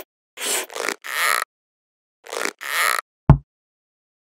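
Cartoon sound effects: a run of short noisy swishes, three in quick succession and then two more, followed by a single sharp low thud a little past three seconds, the loudest sound.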